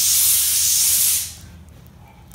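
A loud, steady hissing spray that cuts off a little over a second in.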